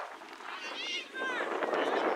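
High-pitched shouts of young players and spectators across a soccer field, with a couple of bending calls near the middle over a steady murmur of voices.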